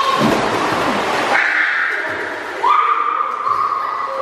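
A splash as a child jumps feet-first into an indoor pool, lasting about a second. It is followed by two long, high-pitched squeals from children, each held for about a second.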